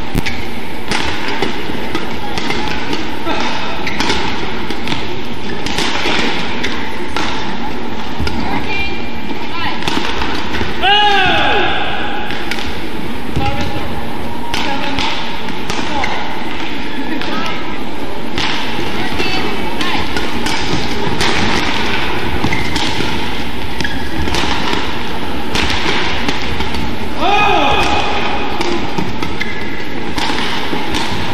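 Badminton rally: repeated racket strikes on the shuttlecock and players' footfalls on the court, over a steady background of crowd voices. Shoes squeak on the court surface twice, about eleven seconds in and again near the end.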